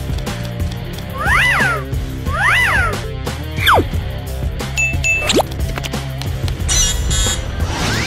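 Background music for an animation, with cartoon sound effects over it: two warbling tones that rise and fall about a second apart, then quick falling whistles, a short high beep and a brief high fizz near the end.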